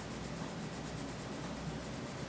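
Staedtler Ergosoft colored pencil shading on coloring-book paper: a faint, steady scratching of the lead across the page.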